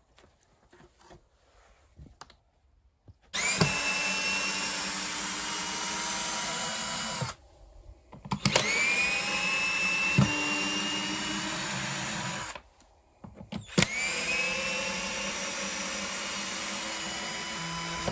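Red cordless drill-driver working into an OSB panel in three long runs of about four seconds each, with short pauses between them. At the start of each run the motor whine rises as it spins up, then holds steady. Before the first run there are a few faint knocks.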